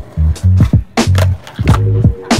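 Music with a heavy bass line and a sharp, regular drum beat.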